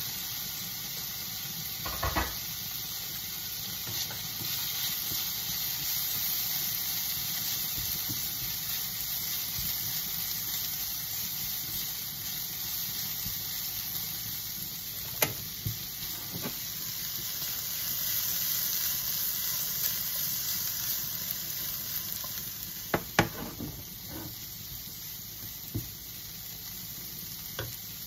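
Shredded cabbage sizzling in a frying pan, the hiss jumping up as the lid comes off, while a spatula stirs it. A few sharp knocks of utensils against the pan, the loudest about two-thirds of the way through.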